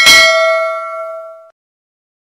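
A bell-like notification ding sound effect, several tones ringing together and fading for about a second and a half, then cutting off abruptly.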